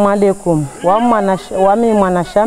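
Unaccompanied singing of a Mahorais chigoma song, in a string of drawn-out notes that bend up and down in pitch, with no drums.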